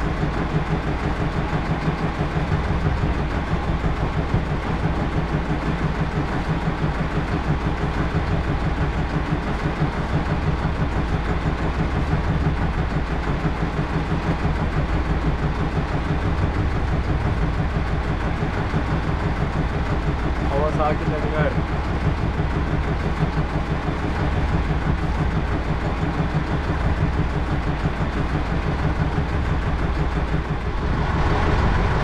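Fishing boat's engine idling, a steady low drone with an even pulsing beat. A short wavering pitched sound cuts in briefly about twenty seconds in.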